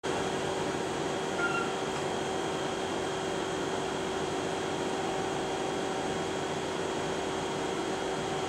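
Steady mechanical hum with hiss, as from a running fan, holding a few constant tones and not changing.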